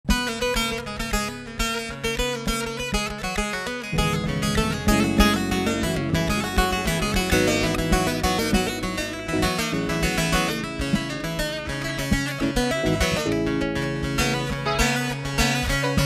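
Bağlama (long-necked Turkish saz) picked with a plectrum in fast, busy runs, playing the instrumental introduction of a Turkish folk song (türkü). A low bass accompaniment joins about four seconds in.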